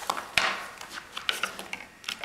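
Handling noise: a sharp knock about half a second in, then a few lighter clicks and rustling as small hard objects of the kit are moved about.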